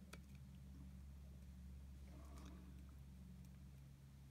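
Near silence: room tone with a steady low hum, and one faint soft sound about two seconds in.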